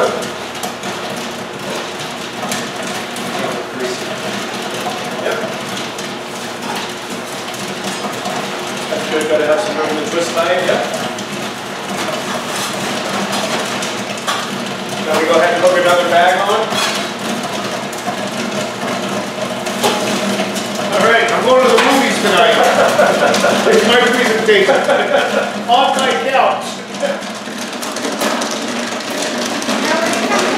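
Indistinct talking among several people over a steady machine hum, with popcorn being scooped and poured into large plastic bags. The voices are loudest for several seconds after about twenty seconds in.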